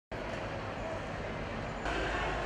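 Steady outdoor background noise on an open field, even and without a clear voice. It steps slightly louder at a cut just before the end.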